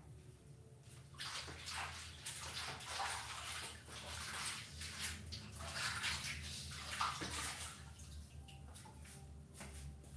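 Water splashing and running in irregular bursts, with a low steady hum underneath.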